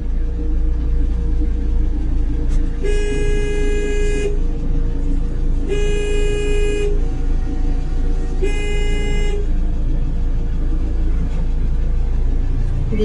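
A vehicle horn sounding three times, each blast about a second long, over the steady low rumble of a vehicle engine idling.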